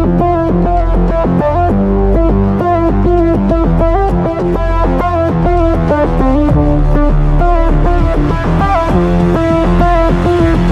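Aggressive electro cyberpunk midtempo instrumental: a deep, sustained synth bass under a fast, busy pattern of short pitched synth notes, at a steady loud level.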